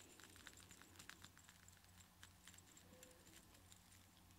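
Near silence with faint, scattered soft clicks, like mouth sounds picked up close to sensitive microphones, over a low steady hum.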